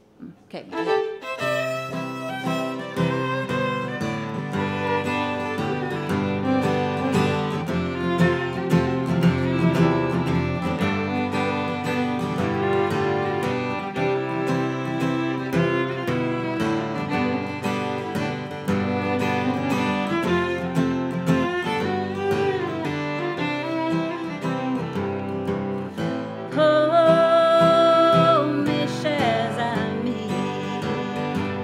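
Fiddle and acoustic guitar playing a waltz in the key of C, the guitar strummed under the bowed fiddle melody. Near the end a louder held note rings out.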